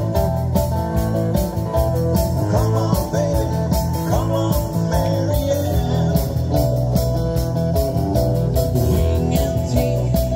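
Live dansband playing through a PA: guitar, bass, keyboard and drums with a steady beat.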